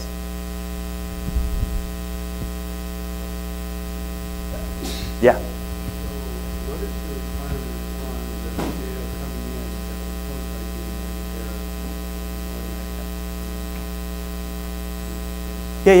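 Steady electrical mains hum on the audio feed, a stack of even, unchanging tones, with a short voice blip about five seconds in and a faint, distant voice beneath the hum in the middle.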